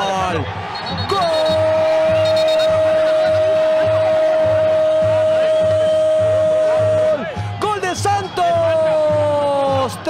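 Spanish-language TV football commentator's goal call: one long, held shout on a single steady note for about six seconds, then excited rapid commentary. A steady low beat runs underneath.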